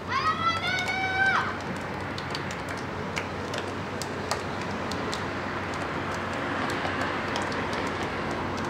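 A high-pitched shout that rises, then holds for about a second and a half, followed by a few light hand slaps and background chatter as the players shake hands down the line.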